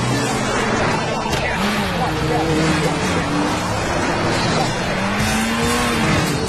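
Motor vehicle engines revving, their pitch rising and falling several times over a steady rushing noise.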